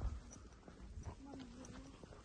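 Faint footsteps on a paved road, soft irregular steps of someone walking.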